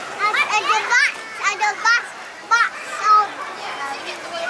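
Toddlers' high-pitched voices babbling and calling out while playing, in short bursts.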